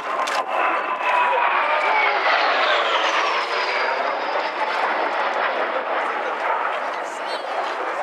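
A Kawasaki T-4 jet trainer's twin turbofan engines passing by: a loud rushing noise with whining tones that fall in pitch over the first few seconds as the jet goes past.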